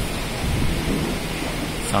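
Steady rumbling hiss of background noise in a large hall, with no speech.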